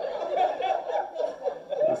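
A man chuckling: a run of short, quick laughs.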